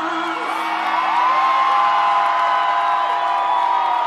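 Concert crowd cheering and screaming after a song, with long high-pitched whoops. One whoop rises about a second in and is held for around three seconds.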